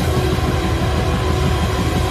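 Live heavy rock band playing loud: a dense, steady wall of distorted guitars and bass with drums, with no clear beat or melody.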